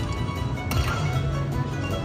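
Dragon Link slot machine's bonus-feature music during a free spin, with a steady low drone and a brighter layer coming in about two-thirds of a second in.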